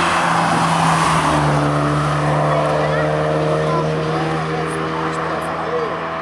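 Mazda MX-5 roadster's four-cylinder engine held at high revs as the car drives through a bend, a loud steady note with tyre and wind noise; the pitch drops slightly about a second in and the sound eases a little toward the end.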